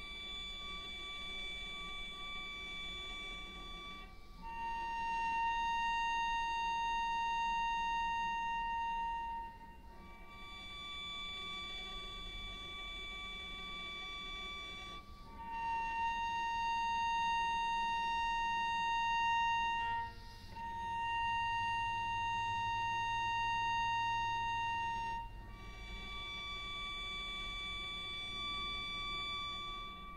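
Solo cello in scordatura tuning bowing long high sustained notes of about five seconds each, one after another with short breaks. The notes alternate between two close pitches, and the lower one is played louder.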